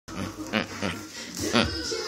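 A man's short, grunting "uh, uh" voice sounds, several in quick succession, with the swish of a feather duster being swatted by a cat.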